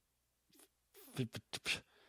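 A pause in a conversation: near silence, then about a second in a few short mouth clicks and a brief breathy vocal sound from a person.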